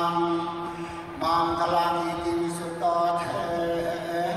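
Thai Buddhist chanting: voices holding long, steady notes, with a fresh phrase starting a little over a second in and again near three seconds.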